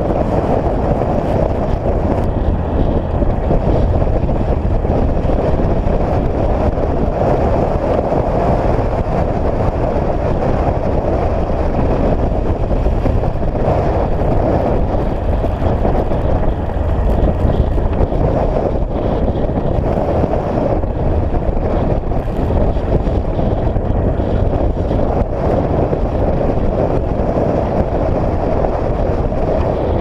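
A UTV driving at a steady speed along a dirt road: engine and driving noise held even throughout, with no change in pace.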